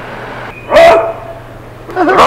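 A man's voice giving one loud, gruff 'Oh!' call, starting just over half a second in and lasting about half a second, over a low steady hum.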